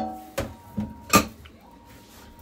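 Kitchenware being handled: a sharp clink that rings briefly, then three short knocks over the next second, the last the loudest.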